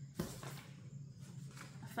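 A sheet of paper picked up off a table and handled: a sharp rustle just after the start, then softer rustling and crinkling.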